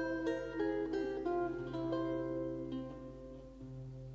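Lute playing a short solo passage between sung phrases: a run of plucked notes that ring and die away over a held low bass note. The notes thin out and grow quieter in the last second or so.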